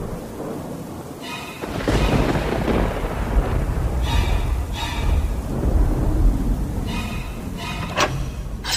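A thunder sound effect: a deep rumble swells up about two seconds in and rolls on with a rain-like hiss, with short musical tones sounding now and then over it.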